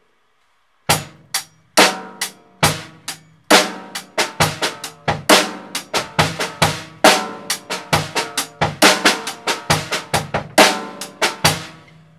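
Acoustic drum kit playing a syncopated eighth-note groove: hi-hat, bass drum and a backbeat snare on two and four, with extra quieter notes placed in between. The playing starts about a second in.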